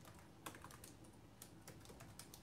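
Faint, irregular light clicks and taps, a few each second, over quiet room tone.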